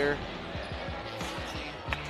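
A basketball dribbled on a hardwood court: a quick run of low bounces over a steady arena hum, with a sharp click near the end.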